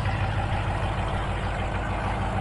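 2022 Ram TRX's supercharged 6.2-litre V8 idling steadily through a straight-piped exhaust with high-flow cats, a deep even rumble from the exhaust tips.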